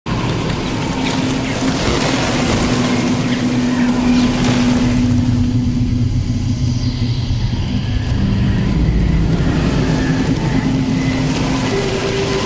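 Eerie sound-design drone: a dense low rumble with a few long held tones over it.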